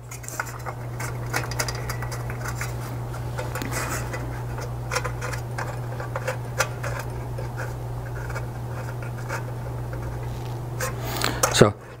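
Small metal screws being tightened into the metal trim of a downlight, giving scattered light metallic clicks and scrapes, over a steady low hum.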